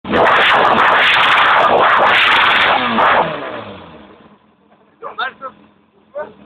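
Yamaha XJ600 Diversion's inline-four engine revved hard through a Scorpion titanium exhaust, held loud for about three seconds, then the revs fall away and it settles to a quiet idle.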